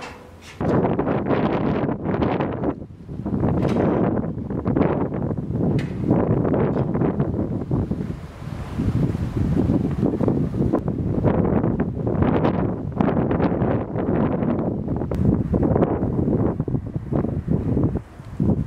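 Wind buffeting the camera microphone in loud, irregular gusts, a rumbling rush that starts abruptly about half a second in and eases briefly a few times.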